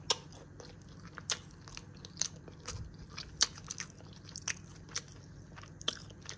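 Close-up eating sounds of a crisp, pan-toasted tortilla quesadilla wedge being bitten and chewed: a string of sharp, irregular crunches about once a second.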